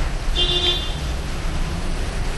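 Steady low background hum, with a brief high-pitched toot about half a second in.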